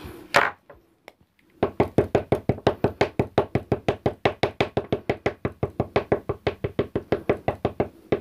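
A distress ink pad dabbed rapidly and repeatedly onto a carved rubber stamp on a tabletop, about eight light taps a second, starting about one and a half seconds in after a single knock.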